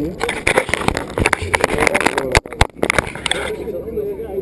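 Camera handling noise on a wooden tabletop: many sharp clicks and knocks over muffled voices, stopping about three and a half seconds in.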